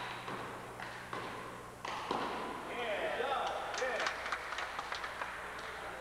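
Sharp slaps of a rubber handball struck by hand and bouncing off the wall and wooden floor in a one-wall handball rally, a few hits in the first two seconds. Then men's voices call out for about a second and a half, with more quick sharp taps.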